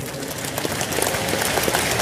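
A large congregation applauding, the sound growing a little louder over the two seconds.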